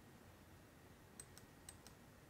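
Near silence, broken by four faint, sharp clicks in two quick pairs in the second half.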